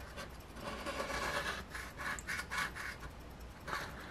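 A coin scraping the scratch-off coating off a lottery ticket in quick, repeated short strokes.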